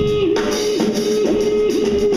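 Guitar and drum kit playing live blues-rock. The guitar holds one sustained high note and bends it down and back about twice a second, with the drums beating underneath.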